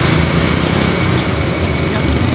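Motor vehicle engines running steadily with roadside traffic noise: a continuous low engine tone under a wide, even noise, with no sudden events.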